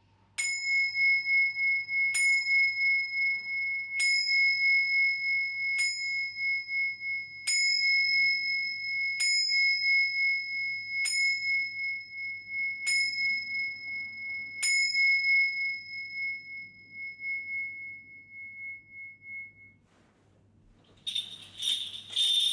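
A pair of tingsha cymbals struck together nine times, about every two seconds, each strike ringing with a clear, high tone that rings on over the next; after the last strike the ringing fades away over several seconds. Near the end a kagura suzu bell tree starts jingling.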